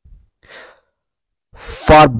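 A mostly quiet pause in a lecturer's narration. There is a faint breath about half a second in, then an audible intake of breath that leads straight into speech at the very end.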